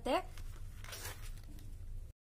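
A glossy page of a spiral-bound catalogue being turned: a faint, brief paper rustle about a second in, over a low steady hum.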